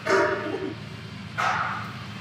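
A dog barking.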